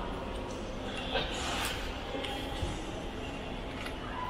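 Steady background hum of a large airport terminal hall, with faint scattered clicks and a brief rustle about a second and a half in.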